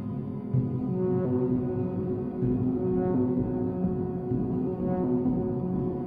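Electronic music played on Korg synthesizers: low, held synth notes that change pitch every second or so.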